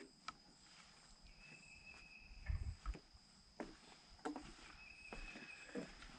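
Quiet forest ambience with a faint, steady, high insect drone. Twice a held, higher-pitched note sounds for about a second, and a couple of dull footfalls land on the wooden boardwalk about halfway through.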